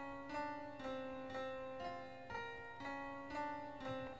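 GarageBand's Steinway Grand Piano software instrument playing a looping sequence of single notes sent as MIDI from a Raspberry Pi, a new note about every half second.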